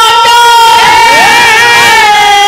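A male Bhojpuri folk singer holds one long, loud high note into a microphone. About halfway through, a second voice glides upward in pitch to join it.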